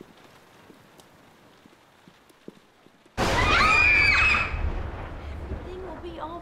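A faint steady hiss, then about three seconds in a sudden loud burst: a high, wavering scream over a deep rumble, fading within about a second and a half.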